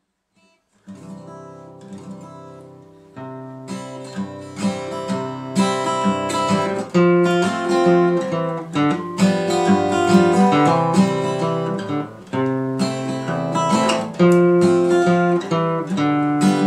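Acoustic guitar intro to a folk song. It comes in softly about a second in and is strummed louder from about three seconds in, in a steady rhythm.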